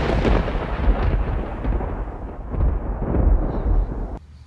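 Rolling thunder rumbling, swelling twice, then cut off suddenly at the end.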